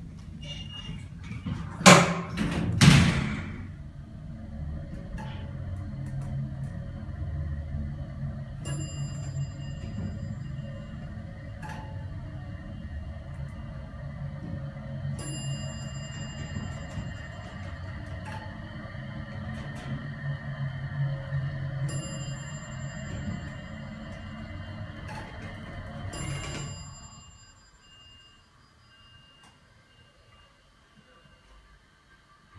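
Dover Oildraulic hydraulic elevator descending: two loud knocks near the start, then a steady low running hum through the ride, with a short chime four times as floors go by, stopping about 27 seconds in. The elevator is no longer low on oil.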